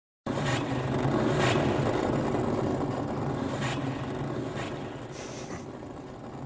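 A low, rumbling drone with a few brief whooshing swells, fading steadily.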